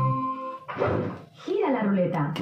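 Gigames El Chiringuito slot machine's electronic sound effects as it enters its roulette bonus. A held synthesized chord cuts off about a third of the way in, followed by swooping electronic sounds and a jingle starting up.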